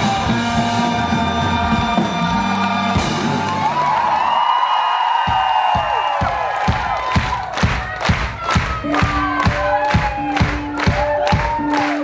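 Live band with a string section holding a closing chord over a low bass line, which cuts off about four seconds in. Crowd whoops and cheers follow, then a steady beat of sharp hits about three a second, with a few held notes over it.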